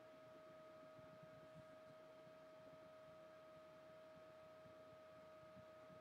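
Near silence: room tone with a faint steady high tone.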